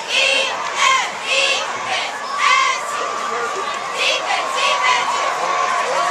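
High school football crowd cheering and yelling during a play, with repeated shrill shouts in the first few seconds and a long, steady high note held through the second half.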